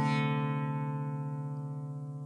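Music: a strummed guitar chord ringing out and slowly fading.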